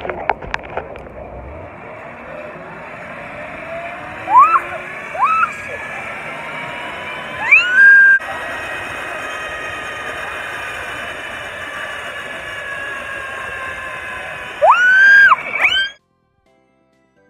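A young woman screaming on an amusement thrill ride: two short screams, a longer one about eight seconds in and two more near the end, each sweeping up in pitch. A steady rushing noise runs underneath.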